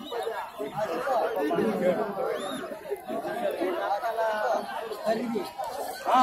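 Crowd chatter: many spectators talking at once in overlapping voices.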